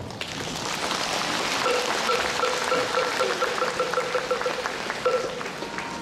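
A large audience applauding, a dense steady clapping that fades slightly at the end. A faint tone pulsing rapidly runs through the middle of it.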